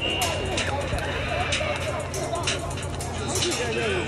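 Busy restaurant dining room: voices talking, with short sharp clinks of plates and cutlery scattered throughout.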